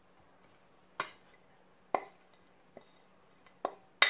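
A metal fork clinking against a white ceramic plate and bowl as chopped vegetables are pushed off into the mixing bowl: about four short, sharp clinks roughly a second apart, the third faint.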